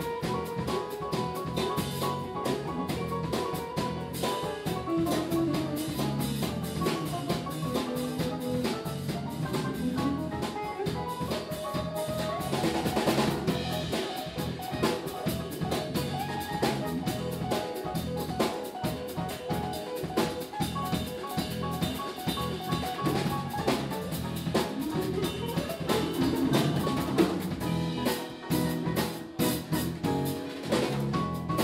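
Jazz quintet playing live: electric guitar and electric bass over a drum kit, with piano and saxophone in the band. The drums are prominent, with a brief louder swell a little before halfway.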